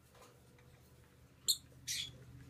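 Young peach-faced lovebird giving two short, high-pitched squeaky chirps in quick succession about a second and a half in, while being petted in a hand.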